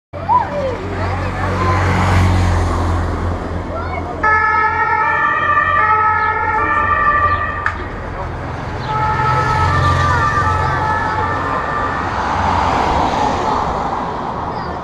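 A vehicle siren sounding in held tones that change pitch in steps, for about three and a half seconds starting about four seconds in, then again more faintly about a second later, over a steady low engine rumble and street noise.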